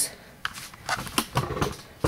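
Four or five sharp, light clicks spaced irregularly, a few tenths of a second apart, over faint rustling.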